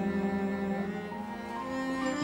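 Sad background score of low bowed strings, cello-led, holding long notes and moving to a new chord about halfway through.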